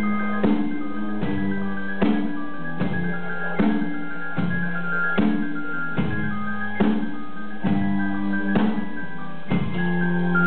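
Live acoustic guitar chords strummed in a steady rhythm, about one stroke every 0.8 seconds, with held notes ringing between the strokes. Instrumental passage with no singing.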